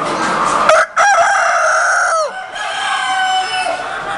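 Rooster crowing, starting just under a second in: a long held call that drops sharply in pitch just after two seconds, followed by a second, lower drawn-out note.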